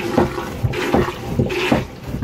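Hand-pumped marine toilet drawing seawater into the bowl on the wet-bowl setting, the pump sloshing in repeated strokes about two a second.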